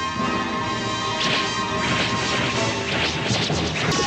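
Fight-scene soundtrack from a 1990s tokusatsu show: several crashing impact sound effects, a second or so apart, over background music.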